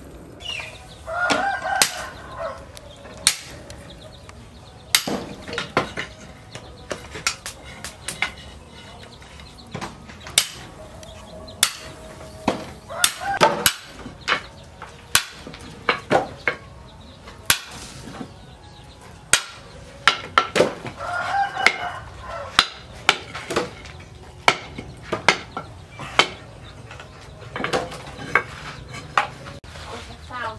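Hand hammer striking red-hot leaf-spring steel on a steel post anvil: sharp, irregular metal blows throughout. A rooster crows three times, about a second in, near the middle and about two-thirds through.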